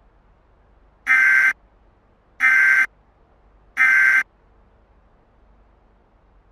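Emergency Alert System SAME data bursts: three short buzzing digital chirps, each about half a second long and about 1.3 s apart, the End of Message code that closes an EAS alert.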